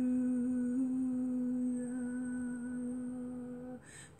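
A woman humming one long held note at a steady pitch, slowly getting quieter and stopping just before the end.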